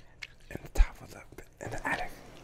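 Uno cards handled and laid down on a wooden floor: a few light taps, then one dull thump a little under a second in.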